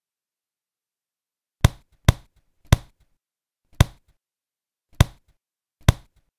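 Six sharp knocks at uneven intervals, beginning about a second and a half in, with dead silence between them: punch sound effects for blows landing on a punching bag.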